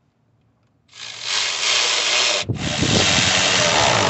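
Socket ratchet with an extension tightening a hose-clamp screw on a rubber intake duct, ratcheting in two long runs: the first starts about a second in, the second follows after a brief break.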